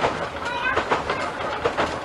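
Kambara Railway Moha 41 electric railcar running along the line, heard from inside the car at its front: its wheels clatter over the rail joints in a quick, uneven run of clicks over a steady running noise.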